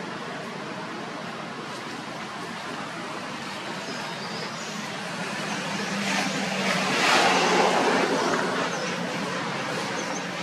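Outdoor traffic background with a motor vehicle passing by: the sound builds about six seconds in, is loudest around seven to eight seconds, then fades.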